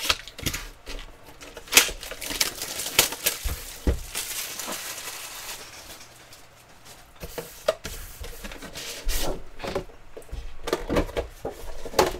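Cardboard trading-card box being handled: scattered taps and clicks, with a stretch of rustling and sliding a couple of seconds in, as the box is set down and its lid is worked open.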